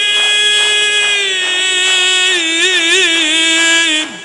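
A man's voice holding one long sung vowel, a Persian religious eulogy (maddahi) note. It dips slightly in pitch about a second in, then wavers in a quick ornamental trill near the middle before stopping at the end.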